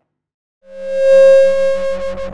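Synthesizer outro sting: a single sustained note fades in about half a second in and holds loud and steady, beginning to waver near the end.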